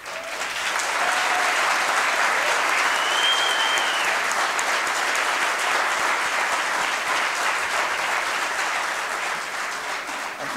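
Audience applauding. It breaks out suddenly and keeps up steadily, easing a little near the end. A short high tone rises and falls about three seconds in.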